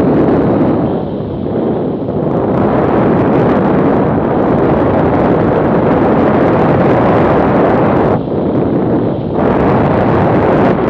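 Loud, steady wind rush buffeting the microphone of a motorcycle riding at highway speed, with the bike running underneath it. The rush eases briefly twice near the end.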